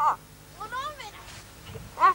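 Short, high-pitched, meow-like vocal cries: a loud falling one at the very start, a softer rising-then-falling one just under a second in, and another loud one at the end.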